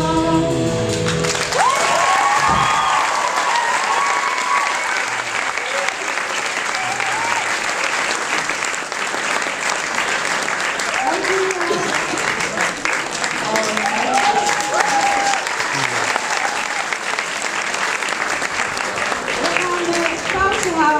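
A band's last held chord dies away about a second in, and an audience applauds loudly, with voices cheering over the clapping now and then.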